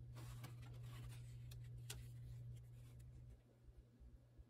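Faint rustling and scratching of paper journal pages being handled and turned, with a few sharp paper crackles, over a low steady hum that drops away about three seconds in.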